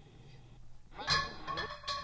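A quiet gap, then about a second in a short vocal sound from a sampled spoken-word recording.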